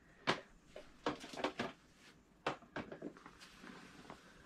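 Hard plastic CGC comic slabs knocking and clacking against each other as they are handled and pulled out, a run of sharp separate knocks with a cluster between one and two seconds in.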